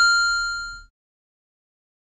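A single bright chime, struck right at the start and ringing out with several clear tones that die away within about a second: a sound effect marking the title card transition.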